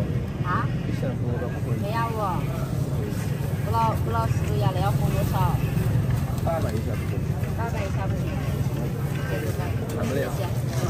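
Several people talking in short snatches around a market stall, over a steady low hum.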